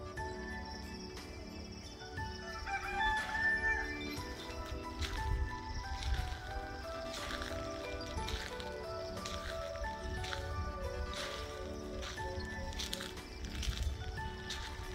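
Background music runs throughout. A rooster crows once, about three seconds in, loud over the music.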